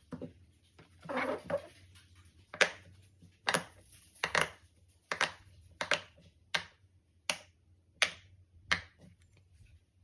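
Silicone pop-it fidget toy having its bubbles pressed in one by one: a series of sharp pops, about one every three-quarters of a second, after a brief rustle of the toy being handled.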